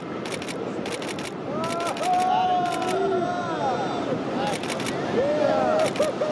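Surf breaking on the beach as a steady wash of noise, with rapid bursts of camera shutter clicks, three or four at a time, about once a second. Voices call out from about a second and a half in.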